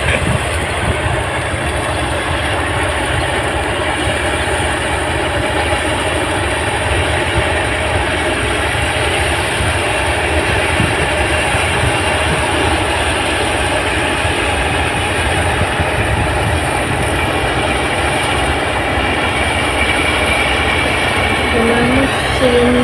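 New Holland 8060 combine harvester running under load while it cuts and threshes rice, a steady, loud mechanical din with a constant low rumble.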